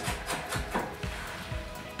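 Background music, with a chef's knife chopping vegetables on a wooden cutting board in a quick series of strokes.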